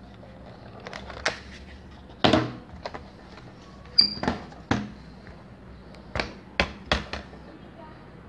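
Sharp plastic clicks and knocks from a Toshiba laptop being handled as its battery pack is taken out. There are about ten clicks in irregular groups, the loudest two and four seconds in.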